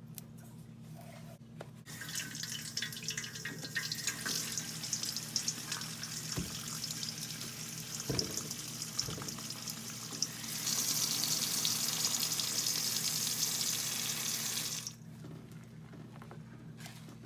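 Kitchen tap water running into a stainless steel bowl of soapy water and sponges. The stream starts about two seconds in, grows louder about ten seconds in, and stops suddenly near the end.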